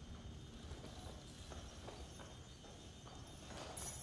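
A few faint, irregularly spaced light taps or knocks over a low background rumble.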